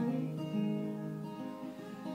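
Acoustic guitar chords strummed softly and left ringing, with a new chord about half a second in, then slowly fading.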